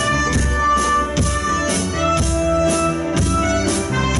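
A live band plays electric guitars, bass, keyboard and drum kit, with drum strokes keeping a steady beat about twice a second under held guitar and keyboard notes.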